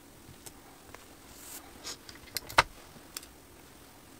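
A printed heat-transfer sheet being handled and pressed flat on a hoodie: a soft paper rustle, then a quick run of sharp clicks and taps, the loudest a little past halfway.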